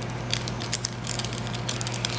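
Small plastic parts and a small plastic bag being handled on a desk: a run of light, irregular clicks and crinkles, over a steady low hum.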